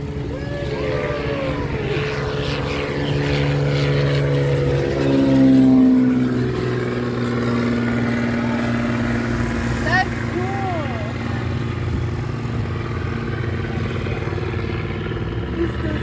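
Small propeller airplane's engine at full takeoff power as it climbs out and passes, its pitch dropping and loudest about five seconds in, then running on as a steady drone.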